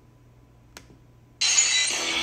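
Ice cubes clinking as a hand picks them out of a bowl: one sharp click about a third in over a low hum. About two-thirds through, loud background music starts suddenly.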